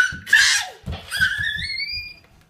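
A young child's high-pitched squeal, rising steadily in pitch over the last second, after a short shrill burst; low thumps sound underneath.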